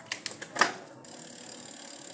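Bicycle drivetrain of a Giant ATX 680 mountain bike turned by hand while its gear shifting is checked. A few sharp mechanical clicks come in the first second, then a steady high whir of the chain and ratcheting freewheel.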